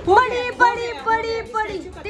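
A high-pitched voice in short, rising and falling phrases, speech-like but without words the recogniser caught.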